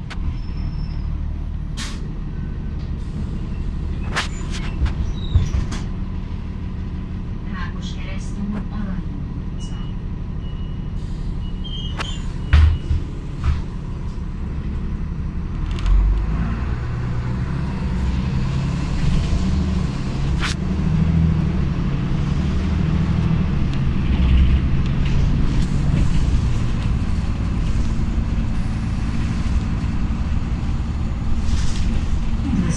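Inside an Ikarus V127 city bus under way: steady engine and road rumble with rattles and clicks from the cabin, a couple of heavy knocks about twelve seconds in, and the engine growing louder through the second half as the bus pulls on.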